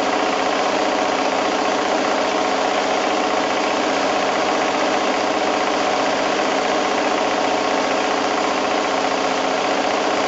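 Domestic sewing machine running steadily without a pause while free-motion quilting a small meander stitch, a continuous motor hum with the rapid even chatter of the needle.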